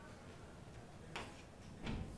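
Chalk tapping against a blackboard as a structure is drawn: two short sharp clicks, about a second in and near the end, over faint room hiss.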